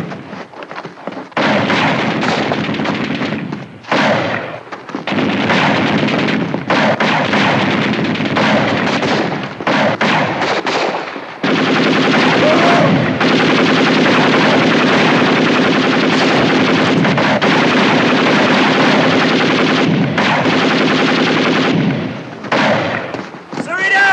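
Film battle gunfire: many rifles and pistols firing, shots overlapping. A little past halfway through the firing thickens into a continuous, unbroken volley.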